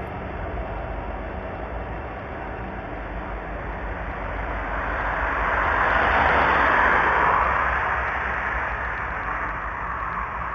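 A car driving past on the street, its tyre and engine noise building to a peak about six to seven seconds in and then fading as it moves away.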